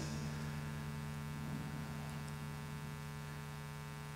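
Steady electrical mains hum, a low buzz with a ladder of evenly spaced overtones, running unchanged through the church sound system's feed.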